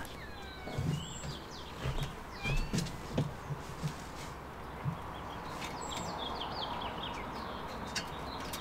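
Small birds chirping and whistling in short, scattered phrases, with a few soft knocks and rustles of handling close by.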